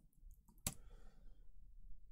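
Computer keyboard keys tapped a few times softly, then one sharp key click about two-thirds of a second in as a command is entered.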